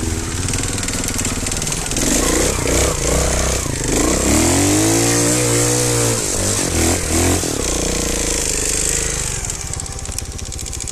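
Trials motorcycle engine heard from the bike itself, the rider working the throttle as it climbs a steep slope: revs rise and fall repeatedly, with one long surge up and back down about halfway through.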